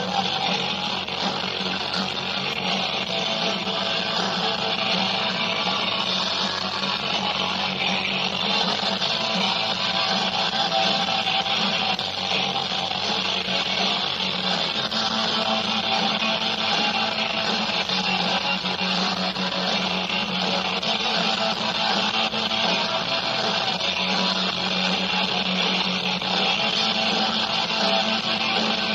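Rock band playing live on electric guitars, bass and drums, in a dense, steady full-band mix captured on a rough concert recording.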